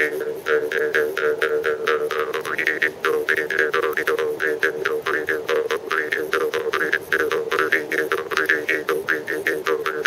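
Bamboo jaw harp played with fast, rhythmic plucks over a steady droning tone, its overtones rising and falling in a twangy, wah-like melody.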